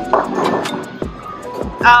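Background music with voices in a bowling alley, with scattered short knocks and clatter from balls and pins.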